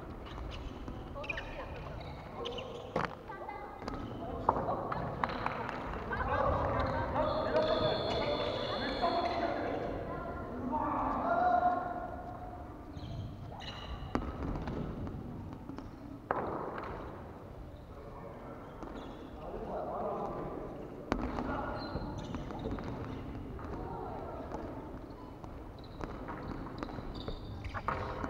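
Volleyball players' voices calling out across a large gymnasium, with a few sharp knocks of the ball being struck and hitting the wooden court.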